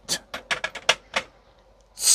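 Small glass hobby-paint jars clicking and knocking against each other and the acrylic rack as one is pulled out: a quick run of about eight sharp clicks over the first second or so.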